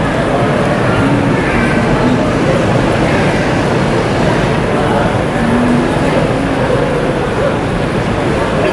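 City street ambience: a steady wash of traffic noise with indistinct voices of passers-by.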